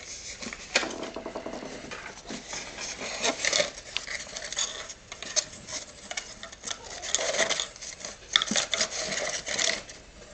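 Foam model-plane parts and paper sheets being handled and packed into a cardboard box: irregular rustling and scraping with many light knocks.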